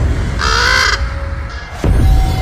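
A raven caws once, a single harsh call about half a second long, over a steady low rumble of film score. A sudden low thump comes near the end.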